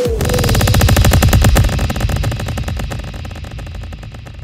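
Synthesized electronic sound effect: a deep, rapidly pulsing buzz that starts suddenly and fades away over a few seconds.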